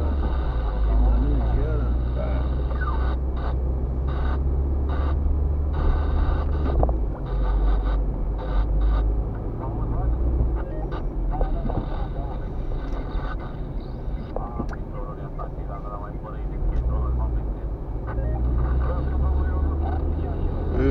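Car cabin noise picked up by a dashcam while driving: a steady low engine and road rumble that shifts in level about a third of the way in, with muffled talk in the car over it.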